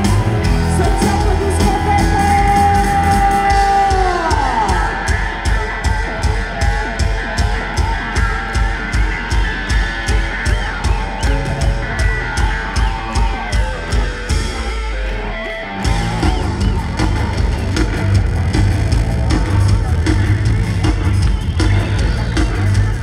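Live rock band playing loud: a held high note slides down about four seconds in, then a steady drum beat drives the song. Near the last quarter the bass drops out for a moment before the full band crashes back in.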